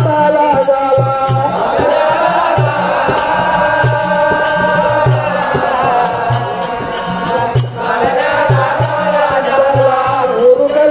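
Live devotional folk music: a chanted song over a steady drum beat, with repeated jingling percussion strokes.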